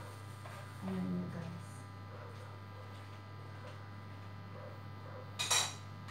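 Metal baking trays clattering as one is set down on another near the end, a single sharp, ringing clank, over a steady low hum.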